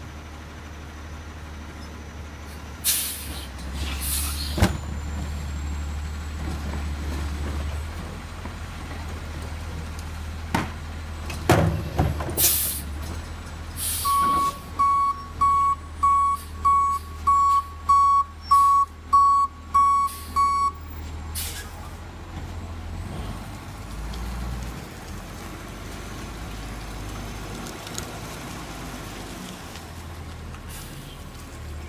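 Garbage truck's diesel engine running steadily, with several sharp air-brake hisses. About halfway through, its backup alarm sounds about a dozen evenly spaced beeps, roughly two a second, then stops.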